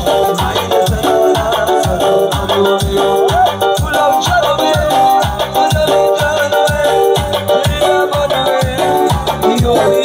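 Live music from an electronic keyboard with a steady, fast beat of about three strokes a second, and a man singing into a microphone over it.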